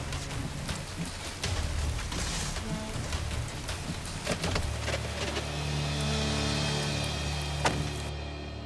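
Rain falling on a car's roof and windshield: a dense patter with scattered sharp drop clicks. Soft music with held tones comes in about halfway, and a single sharp thump sounds near the end.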